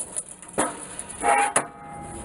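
Homemade wheeled cart, built from an old grill's base and carrying a clothes drying rack, being shoved along with a shovel levered under its pipe: its wheels rolling and scraping, with a steady squeak and a sharp knock about one and a half seconds in.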